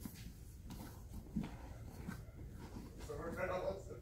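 Faint rustling of heavy cotton jiu-jitsu gis and bodies shifting on a foam mat as two people reposition into closed guard, with a few soft knocks; a man's voice starts up near the end.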